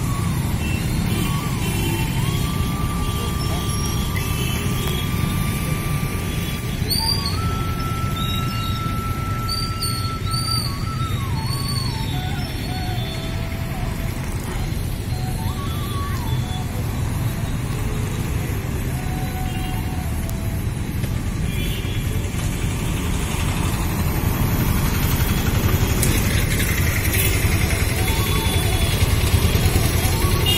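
Music with a slow melody of long held notes and sliding pitches, heard over a steady rumble of road traffic. Near the end a vehicle passes close by and the traffic noise grows louder.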